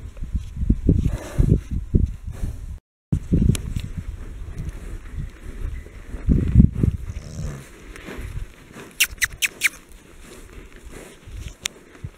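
Horses feeding at round hay bales: irregular low rustles and thumps from the horses as they move and eat, with a quick run of short high squeaks about nine seconds in.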